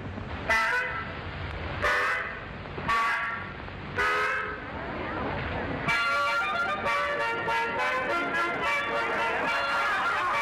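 Four short honking, horn-like toots about a second apart, then music starts about six seconds in and runs on.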